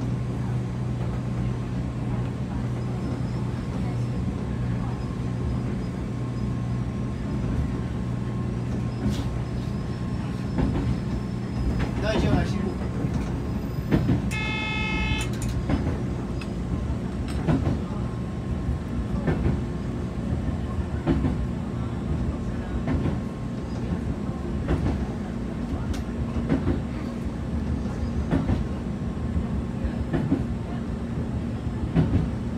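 Electric train running on the track, heard from the driver's cab: a steady low hum with scattered clicks and knocks from the wheels on the rails. About halfway through, a short tone sounds for a second or so.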